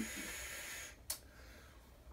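A man drawing a long, faint hiss of breath through a vape, fading out, then one short sharp breath about a second in.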